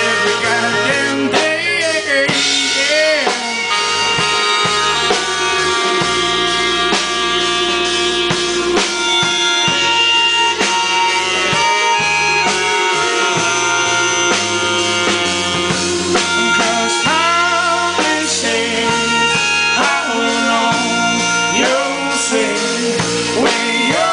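Live band playing an instrumental break between verses, with a melodica playing a lead of long held notes over guitar and drums.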